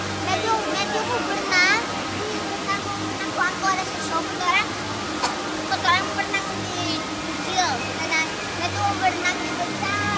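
Steady sound of running water, under the chatter of many people's voices and faint background music.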